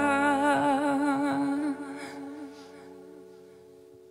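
A woman's long sung note held with vibrato over a ringing acoustic guitar chord. The voice stops a little under two seconds in, and the guitar chord then slowly dies away, closing the song.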